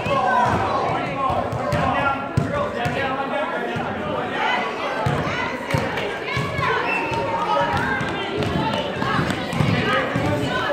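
A basketball bouncing on a gym floor in short thuds, under the overlapping voices of spectators and players in a large indoor gym.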